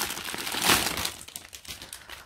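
Plastic bags of diamond-painting drills crinkling as they are handled, with the small resin drills tinkling inside. The rustling is loudest a little under a second in, then dies down.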